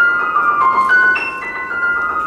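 Grand piano playing a slow line of single high notes in its upper register, about five notes in two seconds, each left ringing into the next.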